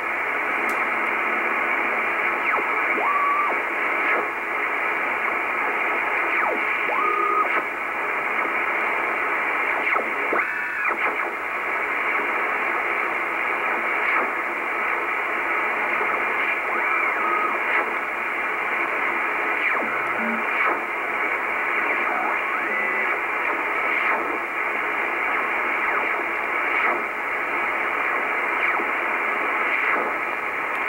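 Icom IC-R8500 communications receiver in upper-sideband mode being tuned across the 24 MHz shortwave range: a steady hiss of band noise, with a few brief whistles as carriers slide past the dial.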